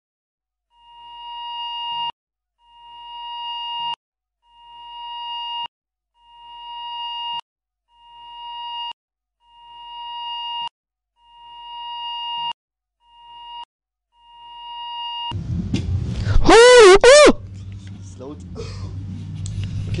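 A pitched electronic tone that swells up and then cuts off abruptly, repeated eight times about every 1.7 seconds. Then steady low room rumble sets in, with a loud wavering vocal cry about two and a half seconds before the end.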